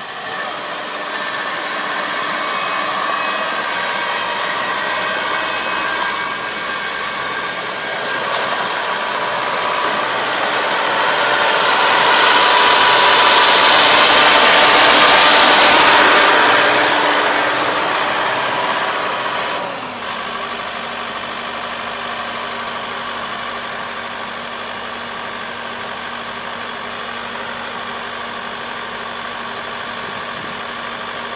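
Kubota ER470 combine harvester running while it cuts rice, its engine and threshing machinery giving a steady mechanical hum. It grows louder as the machine passes close by, loudest around the middle, then drops abruptly about two-thirds of the way through to a steadier, more distant running.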